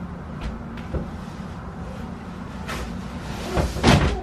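A crib mattress being handled and set down into a wooden crib: a few faint knocks, then a loud thump near the end as it lands on the lowered base. A steady low hum runs underneath.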